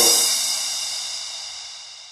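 The last cymbal crash of an electronic dance track ringing out alone and fading away steadily after the beat stops.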